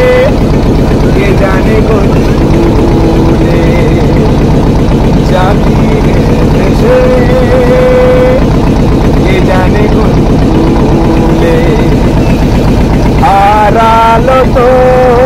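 A river boat's engine running steadily and loud, with a fast, even throb. Voices rise over it now and then, a few of them held notes like singing, and more talk comes in near the end.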